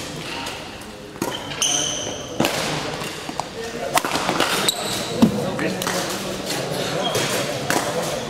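Badminton singles rally: sharp strikes of racket strings on the shuttlecock, several seconds apart, with shoe squeaks on the court floor and footfalls as the players move. There are brief high squeaks near two seconds in.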